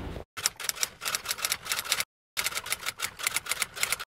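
Typewriter sound effect: rapid key clacks in two runs of a little under two seconds each, split by a brief silence about two seconds in.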